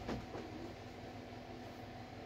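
Faint rustle of a garment being handled and lifted off a table in the first half-second, then a low steady hum of room tone.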